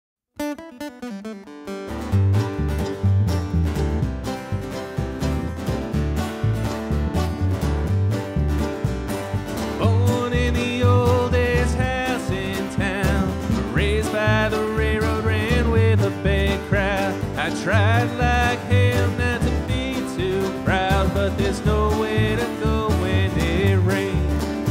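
A bluegrass trio begins a song: acoustic guitar alone for a moment, then upright bass and mandolin come in with a steady driving beat about two seconds in. A voice joins at the mic about ten seconds in.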